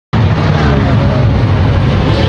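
Steady rumble of a moving car heard from inside the cabin, with a man's voice faintly over it.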